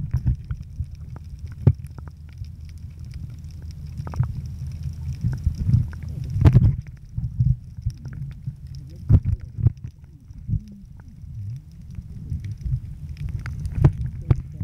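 Muffled underwater sound picked up by a camera held under the sea: a low rumble of moving water against the housing, broken by irregular clicks and knocks, with a louder cluster of knocks about halfway through.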